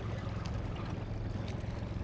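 Outboard motor running at low trolling speed, a steady low hum.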